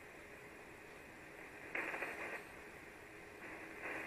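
Steady hiss of 75-metre band noise from an Icom IC-706MKIIG transceiver's speaker, receiving on single sideband between transmissions. It swells louder twice, briefly about two seconds in and again near the end.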